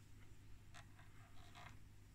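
Near silence: a few faint soft ticks from fingers turning an oscilloscope's vertical position knob, over a low steady hum.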